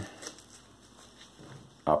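Faint rustling and a few light ticks from hands adjusting the wrist strap of a fabric flashlight glove.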